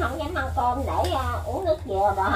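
Speech: a person talking, unclear to the recogniser, over a steady low hum.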